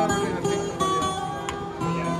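Acoustic guitar played by a street musician, a run of plucked and strummed notes.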